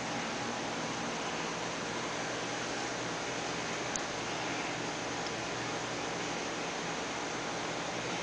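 Steady background hiss of room noise, with one faint short tick about halfway through.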